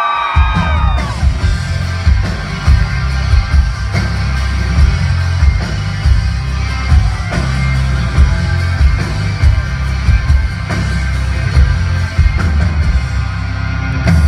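Live country band starting a song with drums and electric and acoustic guitars, recorded from the crowd and very heavy in the bass. Crowd whoops trail off in the first second as the band comes in.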